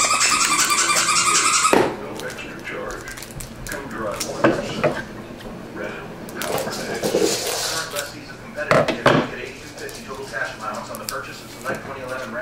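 Trading cards being handled and flipped through by hand, with scattered light clicks and faint low voices. For the first two seconds a louder, steady high-pitched sound covers it, then cuts off suddenly.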